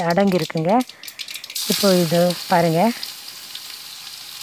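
Crushed garlic going into hot ghee in a steel kadai: a steady sizzle starts suddenly about one and a half seconds in. Before that, there are scattered light crackles from mustard seeds frying in the ghee.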